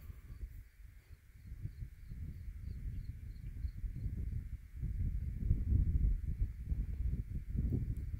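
Outdoor ambience dominated by wind buffeting the microphone: an uneven low rumble that grows stronger in the second half. Faint high chirps repeat about three times a second over the first few seconds.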